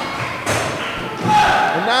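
A single thud on the wrestling ring canvas about half a second in, followed by voices as the pin is made.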